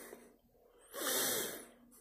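A single audible breath from a man, a little under a second long, starting about a second in.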